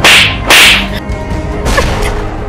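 Two hard face slaps, sharp cracks about half a second apart, each with a short swishing tail.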